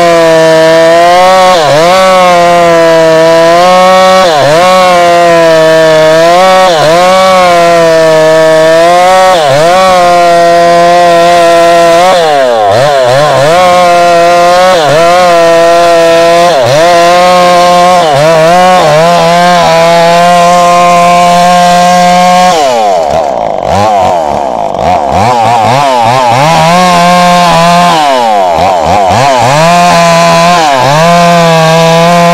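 Two-stroke chainsaw ripping a log lengthwise, its engine held at high revs with the pitch dipping briefly about once a second as the chain bites and the saw bogs under load, then recovering. About three quarters of the way through, the engine note drops lower and wavers for a few seconds before picking up again.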